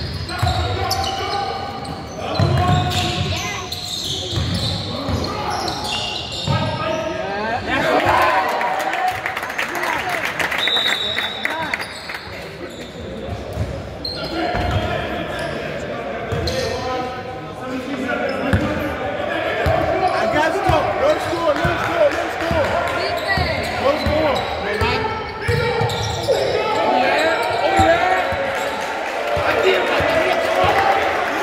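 Basketball being dribbled and bounced on a wooden sports-hall floor, with players' shouts over it, echoing in the large hall.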